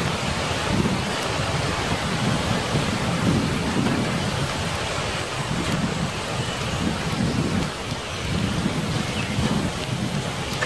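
Steady hiss of rain with a low rumbling underneath, as in a thunderstorm.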